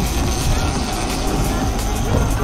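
Boat engine running under way, with wind on the microphone and the rush of the wake, a loud, dense, steady noise heavy in the low end.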